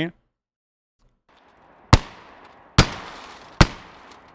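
Three blasts from a Remington 870 12-gauge pump shotgun firing 00 buckshot, a little under a second apart, each trailing off in a short echo.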